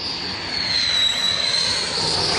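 Jet aircraft noise swelling up, a loud rush with a high whine that slides down in pitch over the first second and then holds steady.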